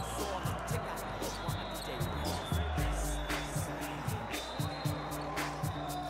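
Background hip-hop music with a steady drum beat and deep bass.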